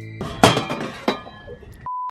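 A sudden loud crackling crash, loudest about half a second in and dying away over the next second. Near the end a short steady beep of a 1 kHz test tone, the tone that goes with colour bars.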